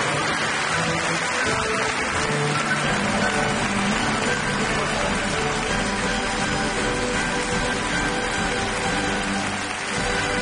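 Music playing with an audience applauding over it throughout.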